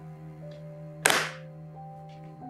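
Background music with steady held tones. About a second in, one loud sharp bang that fades quickly: an aluminium briefcase lid being slammed shut.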